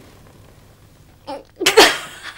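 A young woman bursts out laughing after a quiet stretch: a short catch of breath, then a loud, sharp outburst of laughter near the end.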